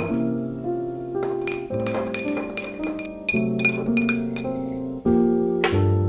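A metal teaspoon clinking against the inside of a ceramic mug while stirring, in a quick run of light clinks about four a second from about one and a half seconds in until nearly five seconds, over background guitar music.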